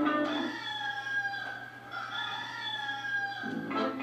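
A single long, high, wavering call-like tone of about three seconds, rising slightly and then falling, in a break in the backing guitar music. The music comes back in near the end.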